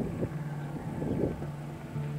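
Heavy diesel dump trucks running along a road, a steady low engine drone.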